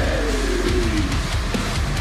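Deathcore breakdown music: heavy guitars over a rapid pattern of bass-drum hits, with a note gliding down in pitch over the first second and a half.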